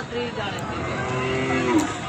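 A cow mooing once, a call of about a second that rises in pitch just before it stops.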